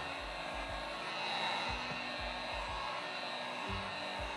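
Electric heat gun blowing steadily over wet acrylic paint, run to pop surface bubbles and help the silicone oil work its way through the pour.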